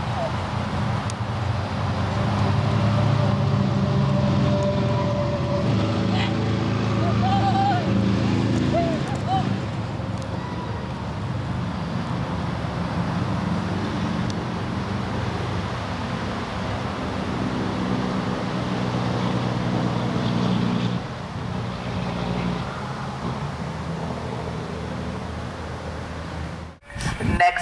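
A motor vehicle engine running steadily nearby, a low hum that stays at an even pitch, with faint voices now and then.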